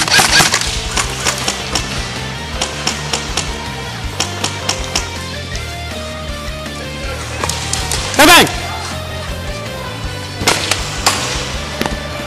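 Airsoft rifles firing single shots and short bursts, heard as quick sharp cracks and BB hits against plywood barricades, over background music. A loud shout rises above them about eight seconds in.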